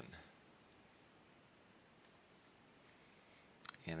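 Near silence: room tone with a few faint computer mouse clicks as the program is run.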